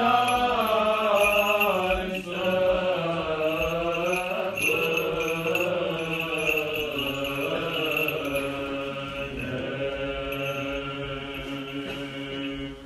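Orthodox church chanting: sung voices hold long notes that step slowly up and down in pitch, growing gradually quieter toward the end.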